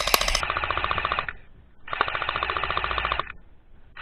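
An airsoft electric rifle (AEG) firing two full-auto bursts of about a second and a half each, a rapid even clatter of shots with a short pause between.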